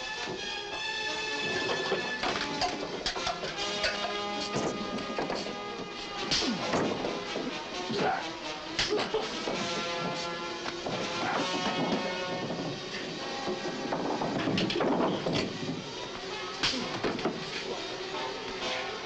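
Dramatic background music over a brawl, with repeated thuds and crashes as punches land and bodies hit tables and benches.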